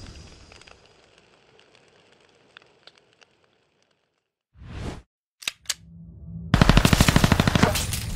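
Outro sound effects: the tail of a blast fading away, then a short whoosh and two sharp cracks. About six and a half seconds in comes a loud burst of rapid machine-gun fire lasting a little over a second, followed by a low rumble.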